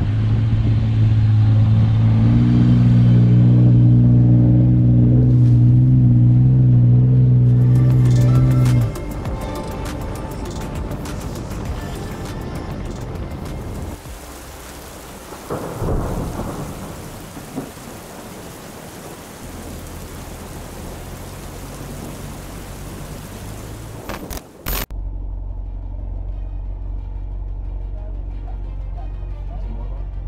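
Held music chords for the first nine seconds, then a steady rushing, rumbling noise with a brief swell about halfway through, cut off abruptly near the end and followed by low steady tones.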